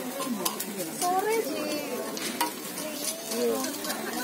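Takoyaki batter sizzling on a hot cast-iron takoyaki pan while a metal pick scrapes through it, with a few sharp clicks as the pick taps the pan.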